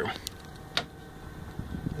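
Faint steady hum of a running bathroom exhaust fan blowing through its duct, with two sharp clicks, about a quarter second and just under a second in.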